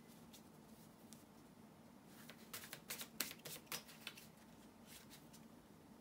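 Tarot cards being shuffled by hand: a short burst of crisp card clicks in the middle, with near silence either side.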